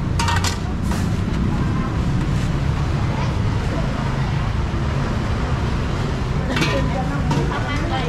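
Steady low rumble of street traffic, with a few short clatters of dishes or utensils about half a second in and again near the end, and people talking in the background.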